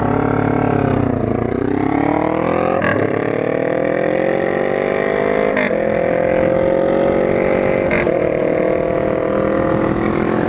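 Kawasaki Ninja motorcycle engine pulling away from a stop and accelerating, its pitch climbing through each gear with four upshifts, about one, three, five and a half and eight seconds in.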